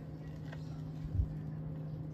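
Turntable stylus riding the run-out groove of a 33 rpm LP after the last track of a side has ended: faint surface noise with a steady low hum, a small click about half a second in and a soft thump about a second in.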